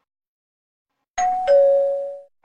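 A two-note ding-dong chime after about a second of silence: a higher note, then a lower one about a third of a second later that rings on and fades. It is used as a section-change sound effect.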